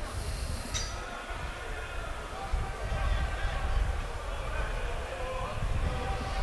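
Football stadium ambience: a low rumble with scattered distant voices and shouts from players and spectators while a corner kick is being set up.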